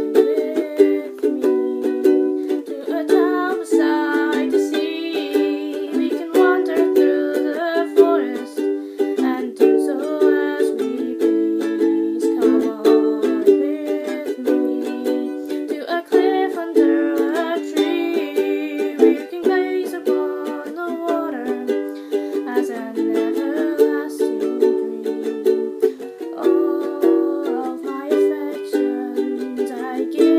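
Ukulele strummed in a steady rhythm, changing chords as it plays.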